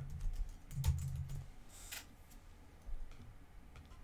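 Computer keyboard typing: a handful of scattered keystrokes, thinning out in the second half.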